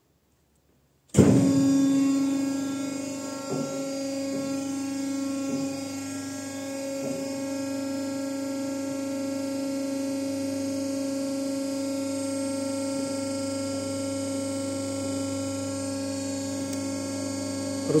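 The electric motor and hydraulic pump of a Weili MH3248X50 cold press cut in about a second in, loudest at the start, then run with a steady hum as the press plate is raised.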